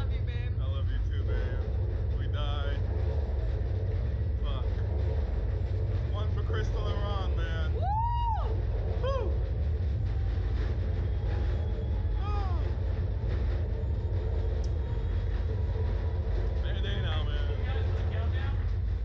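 A steady low rumble runs throughout, with scattered brief voices over it and one rising-and-falling vocal call about eight seconds in.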